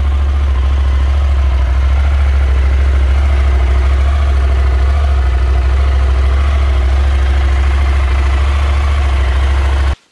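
Husqvarna Norden 901's parallel-twin engine idling steadily through its stock factory exhaust, a deep even hum.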